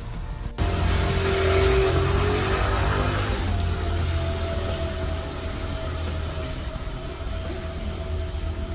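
Street noise from a wet city street swells in suddenly about half a second in, with a motor scooter's engine running through it and music under it.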